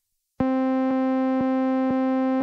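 Synthesizer in the Groove Rider 2 groovebox app playing back a simple clip: the same note repeated at about two notes a second, starting about half a second in, a steady pitched tone rich in overtones. It is a really boring sequence of notes.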